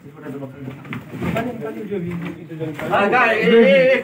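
Indistinct men's voices talking in a small room, loudest near the end.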